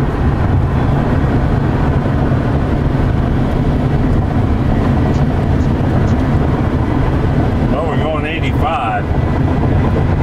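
Steady road and wind noise inside the cab of a 2000 Chevy S-10 pickup converted to electric drive, cruising at freeway speed. A brief voice is heard near the end.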